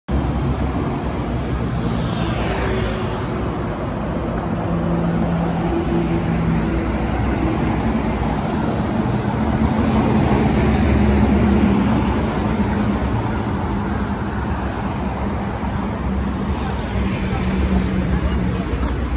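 Road traffic passing, then a MAN NL323F A22 single-deck bus approaching and pulling into the stop. Its engine rumble is loudest from about nine to twelve seconds in.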